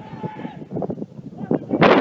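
Wind buffeting the phone's microphone in uneven low thumps, the loudest gust near the end, with faint distant shouting at the start.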